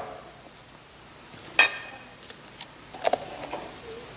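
A table knife clinking once against crockery with a short ring about a second and a half in, followed by a few fainter clicks and taps, as a sandwich is being made.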